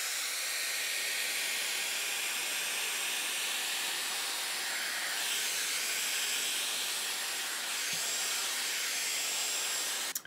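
Dyson Airwrap blowing hot air steadily through its smoothing attachment as it is drawn down the hair, a constant rushing hiss whose tone shifts slightly for a few seconds midway.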